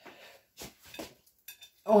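A few light clinks and taps of a kitchen utensil against dishes, spaced out over the first second and a half, followed by a voice at the end.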